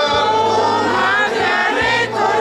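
A crowd of nuns singing a Spanish Marian hymn together, many women's voices holding long notes.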